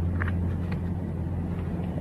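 A steady low hum in a pause between speech, with a few faint light ticks.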